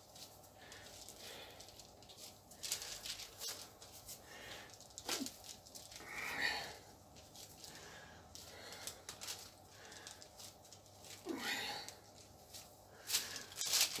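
Faint, scattered squishing and rustling of bread dough with fried onions being pressed apart and folded over by gloved hands on a paper-covered worktop.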